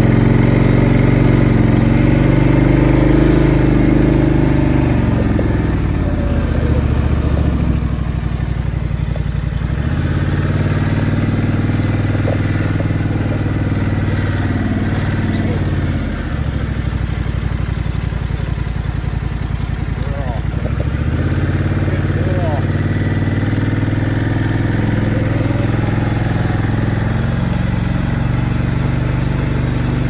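Four-wheeler (ATV) engine running while riding a dirt trail, its note falling and picking up again several times as the rider slows and speeds up.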